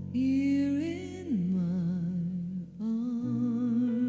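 Slow ballad: a female voice sings long notes with vibrato over soft accompaniment, sliding up in the first second, dropping to a lower wavering note, then holding a new note near the end.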